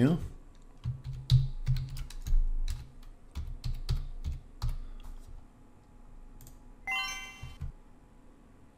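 Computer keyboard typing: an irregular run of key clicks over the first five seconds or so, then a short electronic chime near the end.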